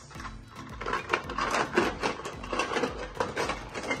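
Plastic toy food clattering and rubbing as a hand rummages through a plastic toy shopping cart: many quick, irregular knocks and clicks.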